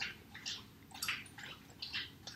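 Glue stick rubbed and dabbed against a cotton ball on a paper plate: quiet, short sticky scuffs, about two a second.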